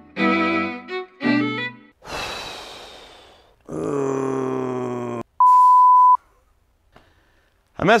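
Intro music of short string notes ends, followed by a whoosh. Then comes a man's long, frustrated groan and a loud, steady, high beep of a censor bleep lasting under a second.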